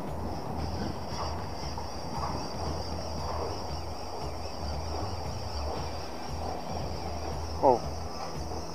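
Steady outdoor background noise: a low fluttering rumble and a constant thin high-pitched hiss, with a brief voice sound near the end.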